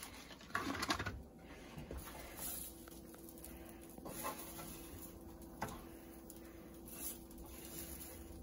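Spatula scraping and scooping hash browns across a stovetop griddle: a louder scrape about a second in, then soft scrapes and light taps.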